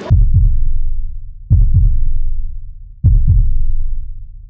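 Heartbeat-style suspense sound effect: three deep pulses about a second and a half apart, each a cluster of quick thuds trailing off in a low rumble.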